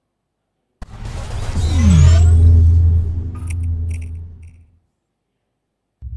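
Cinematic transition sound effect: a sudden hit about a second in, then a deep rumble with a falling pitch sweep and a rising whoosh, dying away after about four seconds.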